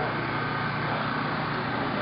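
Steady outdoor street ambience: an even hum and hiss with faint voices in the background.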